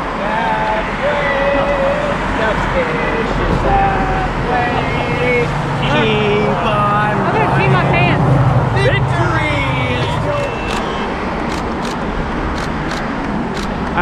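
Several people talking and calling out over one another, too indistinct to make out, over steady road traffic noise. A low rumble swells in the middle and fades again, like a vehicle passing, and a few sharp ticks come near the end.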